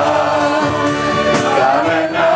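A woman singing a Greek song live into a microphone, holding long notes over acoustic band accompaniment, with a few sharp percussion hits.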